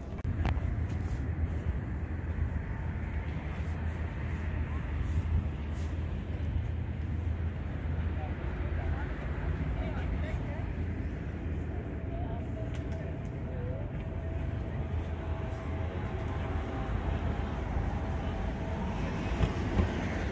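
City street ambience: a steady rumble of traffic with voices of passers-by.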